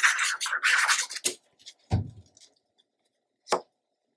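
Scratchy rubbing of a glue bottle's tip being drawn across a paper panel for about the first second. Then a light click, a soft thump as the panel is set down on the page, and one sharp click.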